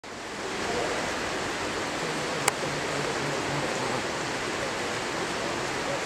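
Rain falling steadily, an even hiss that fades in over the first second. One sharp click about two and a half seconds in.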